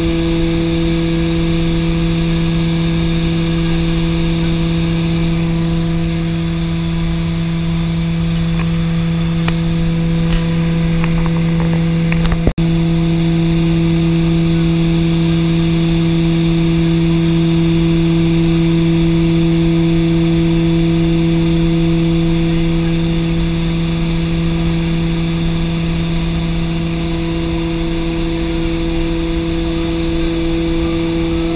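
Short SC.7 Skyvan's twin turboprop engines and propellers in cruise, a loud steady drone with a strong low hum heard inside the cockpit. There is a single brief click about twelve seconds in.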